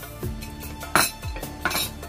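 A metal spoon clinking against crockery: a sharp clink about a second in and a second one shortly after. Background music with a steady beat plays throughout.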